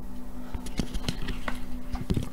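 Several light clicks and taps of handling, scattered and irregular, over a steady low electrical hum.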